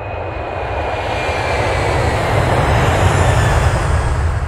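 Airplane flight sound effect: a steady engine rumble and rush of air, with a faint high whine, growing slightly louder.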